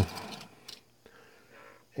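Faint handling sounds and a light click, about two-thirds of a second in, as a small HO-scale model car is set down on a hardboard painting board.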